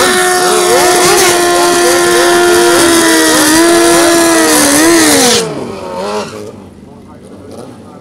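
BMW sport bike engine held at high, steady revs in a burnout, the rear tyre spinning in place. The revs dip briefly once, then it is let off about five seconds in and the sound falls away.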